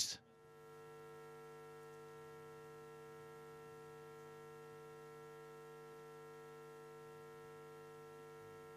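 Faint, steady electrical mains hum, a set of unchanging tones, with no other sound above it.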